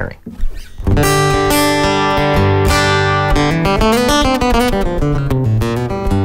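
Martin GPCPA1 Plus acoustic-electric guitar (Grand Performance cutaway, solid East Indian rosewood back and sides) heard through its plugged-in under-saddle pickup alone, without the Aura acoustic imaging blended in. Chords begin about a second in and ring on, changing every second or so.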